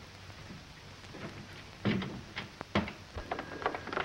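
Steady hiss and crackle of an early-1930s optical film soundtrack. Then a man calls out a word, followed by a run of sharp knocks and clicks.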